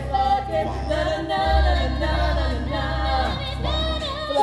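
A small mixed choir of male and female voices singing a cappella in harmony, with a low bass note held underneath from about one and a half seconds in.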